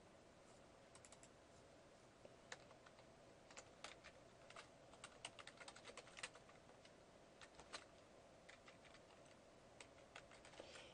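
Faint computer keyboard typing: scattered key clicks in quick runs, busiest from a few seconds in until near the end, over a faint steady hum.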